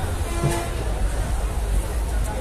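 General noise of a busy cattle market under a tent: a steady low rumble with a crowd murmur over it, and no single event standing out.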